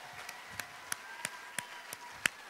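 One person clapping hands in a slow, even rhythm, about three claps a second, getting louder near the end.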